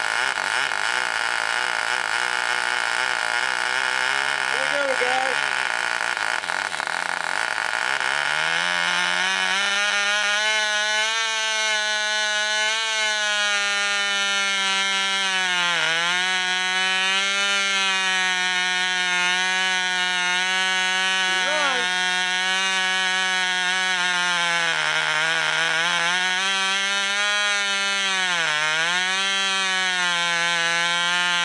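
Vintage Cox model-airplane glow engine running on nitro fuel. About eight seconds in its pitch climbs as it picks up speed, then it runs steadily, sagging briefly in speed a few times.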